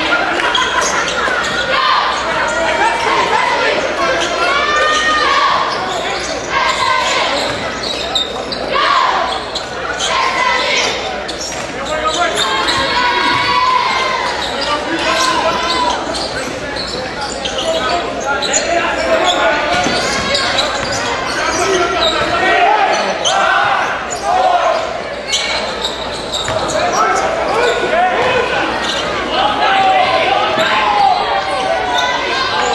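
Live sound of a basketball game in a gymnasium: a basketball being dribbled on the hardwood, with players' and spectators' voices carrying and echoing around the hall.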